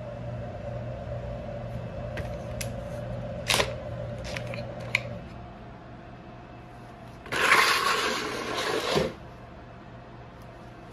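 Paint-mixing paddle knocking and clicking against plastic paint buckets as it is lifted out of the mixed paint and set into a second bucket. Near the end comes a loud rushing noise lasting about a second and a half.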